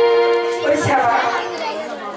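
A performer's voice singing or declaiming over stage music: a held pitched note at first, then bending vocal phrases from about half a second in, with a few low drum-like beats near the one-second mark.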